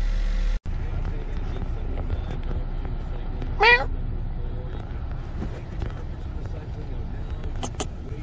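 Steady low rumble of an idling vehicle engine. A single short call with a rising-and-falling pitch comes about halfway through, and two sharp clicks come near the end.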